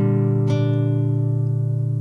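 Alhambra 7P nylon-string classical guitar fingerpicked: a chord plucked at the start and another about half a second in, both left to ring and slowly fade over a sustained low bass note.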